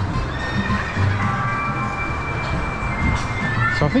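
Theme-park area soundtrack playing from loudspeakers: a few high tones held for about three seconds over outdoor park ambience.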